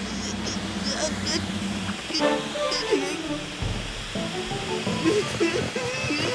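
Cartoon soundtrack: background music over a steady rushing noise, with a character's short grunts and vocal sounds scattered through it.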